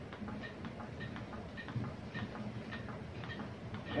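CPR training manikin clicking with each chest compression, a steady rhythm of about two clicks a second.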